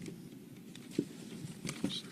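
A few soft clicks and knocks over a faint low room murmur: handling noise while equipment is being set up between talks.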